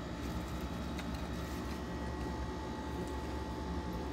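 Steady low hum of room background noise, with a faint click about a second in.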